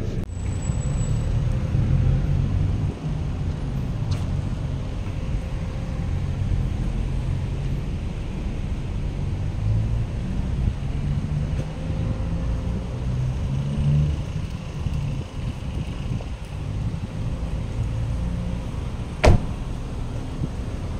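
Low, uneven rumble of a car rolling slowly with its engine running, heard from inside the cabin. A single sharp knock comes near the end.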